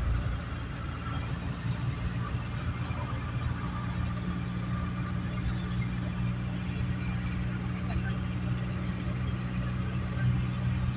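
Minibus engine and road noise heard from inside the passenger cabin while riding: a steady low drone that settles into an even hum a few seconds in.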